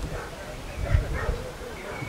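A dog barking, with people's voices.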